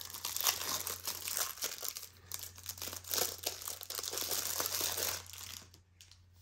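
Crinkling and rustling of plastic wrapping as a pack of energy cards is handled and unwrapped, a dense crackle of small ticks that stops near the end.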